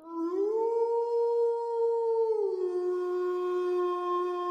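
A single long wolf howl: it rises in pitch over the first half-second, holds, then drops a step a little past two seconds in and holds on.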